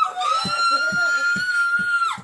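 A woman's high-pitched held shriek, a drawn-out 'biiiitch!' sustained on one high note, with low thumps about twice a second beneath it.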